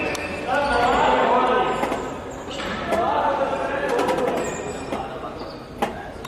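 Voices calling out across a reverberant sports hall during an indoor football match, over a steady background din, with the thud of the ball. A sharp thump comes near the end.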